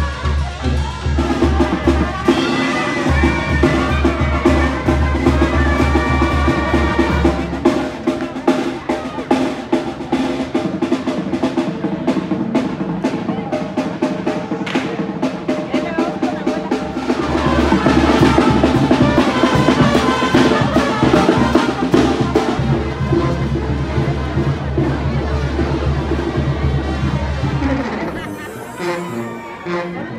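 Band music with a drum kit: snare rolls and bass drum under a melody, stopping at the very end.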